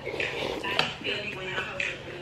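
A spoon clinking against a cereal bowl while someone eats, with a few sharp clinks.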